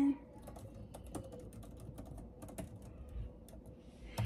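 Typing a short text message: soft, irregular clicks of keys being tapped.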